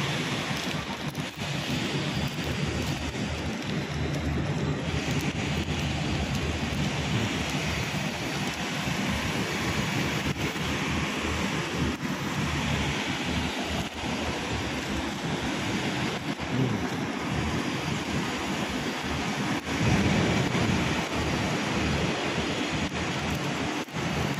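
Steady rushing outdoor noise of wind buffeting the microphone over city street traffic, swelling a little near the end.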